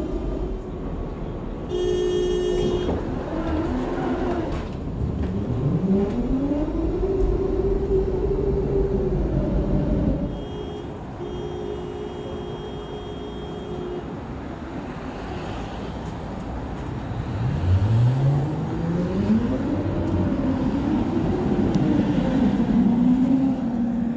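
Tatra T3M tram: the door warning buzzer sounds, briefly about two seconds in and for about three seconds around the middle. Twice the motors' whine rises in pitch and levels off as the tram accelerates away, once before the middle and again in the last third, over running rumble.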